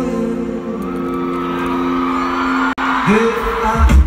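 Live amplified pop music heard from the crowd in an arena: a singer's voice over long sustained chords. Near three-quarters of the way through the sound cuts off abruptly, and a new passage starts with a rising sung note and a heavy drum beat.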